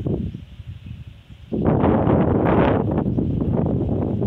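Wind buffeting the microphone in gusts, jumping suddenly louder about a second and a half in and staying strong.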